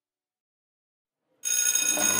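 Silence, then about one and a half seconds in a school bell suddenly starts ringing, a steady ring that keeps going.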